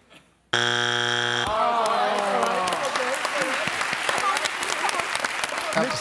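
Game-show wrong-answer buzzer: one harsh, steady electronic buzz about a second long, marking a strike for an answer not on the board. It is followed by loud studio audience noise with voices and clapping.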